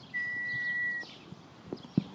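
One long whistled note, steady and falling slightly in pitch, lasting about a second, then a couple of soft knocks near the end.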